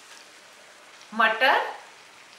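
Onion and garlic paste gravy frying in ghee in a stainless steel pan, a steady faint sizzle. A voice speaks briefly just past the middle.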